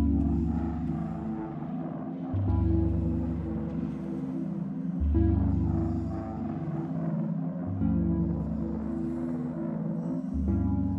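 Slow soundtrack music with sustained low chords and a deep bass note that comes in afresh about every two and a half seconds.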